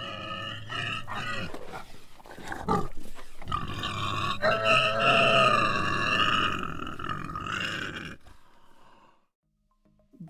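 Pig squealing: a long run of high, wavering squeals that grows louder about three and a half seconds in and stops a couple of seconds before the end.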